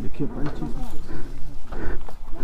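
Background chatter of men's voices, softer than the rider's own narration, over a steady low rumble.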